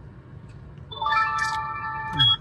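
Smartphone ride-request alert from the 99 driver app: about a second in, a bright electronic chime of several steady tones sounds together for a little over a second, signalling an incoming ride offer.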